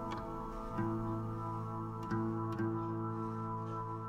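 Background music: a plucked guitar playing slow, held notes, changing to new notes about a second in and again about two seconds in.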